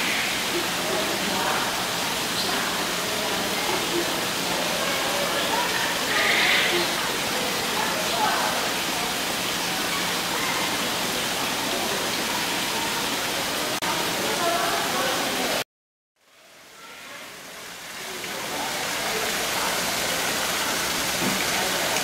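Steady rushing background ambience of a busy indoor conservatory, with faint, indistinct voices. About three-quarters of the way through the sound cuts out abruptly and fades back up over a couple of seconds, where one camcorder recording stops and the next starts.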